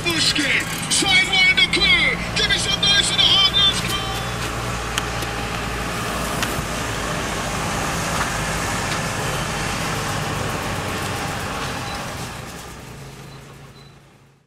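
Engine and road noise heard from inside a moving vehicle, a steady low hum with a rushing sound. It fades out over the last two seconds.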